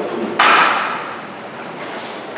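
A single sharp knock, as of something set down hard on a table, about half a second in, with a short echo dying away in the large room.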